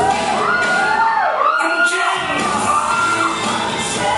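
Audience cheering and whooping, several high voices rising and falling on top of one another, over cha-cha-cha dance music.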